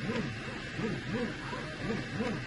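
3D printer stepper motors driving the print head back and forth, each move a short whine that rises and falls in pitch, about three a second. The printer is running far faster than normal right after resuming from a pause, which the owner suspects is a bug in the slicer's pause-at-height routine.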